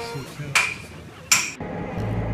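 Three sharp metal-on-metal hammer strikes, each ringing briefly, spaced unevenly about half a second and then nearly a second apart.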